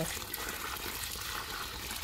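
Water pouring steadily from a plastic bucket onto the soil around the base of a young bael tree, pooling around the trunk.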